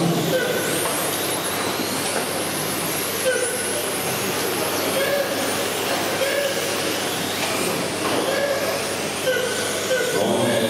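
A pack of electric RC touring cars with 13.5-turn brushless motors racing on a carpet track: a steady whir of motors, gears and tyres, with high whines rising and falling as the cars pass.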